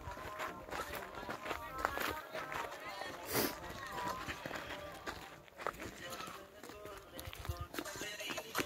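Footsteps on a dry dirt trail, with faint voices in the background.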